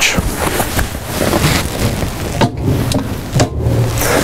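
Rustling handling noise as the camera and presenter move inside the van, with two short knocks about halfway through and a second later.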